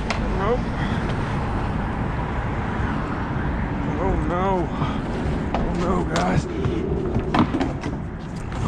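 Steady wind and water noise over an open boat while a fish is played on rod and reel. Short rising-and-falling calls come about half a second in and again around four and six seconds in. Scattered clicks and knocks of tackle being handled fill the second half.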